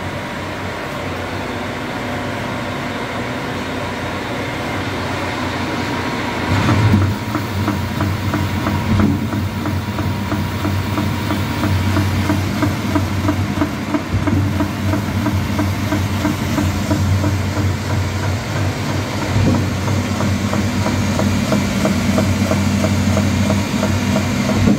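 Seydelmann K120 bowl cutter running empty, its stainless bowl turning. About six and a half seconds in, the unloader is lowered into the bowl and its disc starts spinning: the running noise gets louder, with a deeper hum and a steady rhythmic pulsing.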